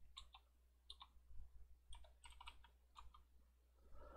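Faint computer keyboard typing: scattered soft keystrokes in a few small clusters, over a low steady hum.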